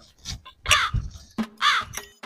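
A crow cawing twice, each caw falling in pitch.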